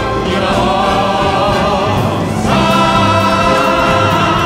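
Several singers in harmony with an orchestra, a live concert recording of a show tune. The voices hold long, wavering notes and move to a new, fuller held chord about two and a half seconds in.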